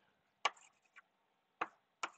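Chalk tapping against a blackboard while drawing: two sharp taps about a second apart, with a fainter one between them.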